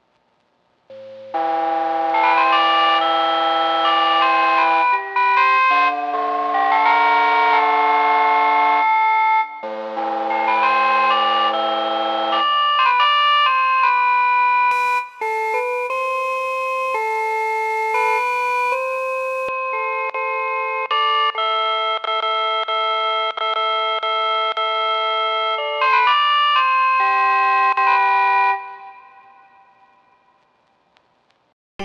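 Bell-like keys patch 'That Tune' from the Empty Fields F.3 pack for UVI Falcon, playing held chords and then a melody of sustained notes. Near the middle, a hiss of vinyl noise comes in for about four seconds.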